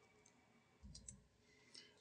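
Near silence, broken by a few faint clicks about a second in and one more near the end.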